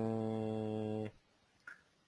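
A man's drawn-out hesitation sound, "eeeh", held at one steady pitch and trailing off about a second in.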